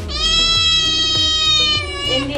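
A kitten meowing: one long, high meow lasting nearly two seconds that dips slightly in pitch at the end, over background music.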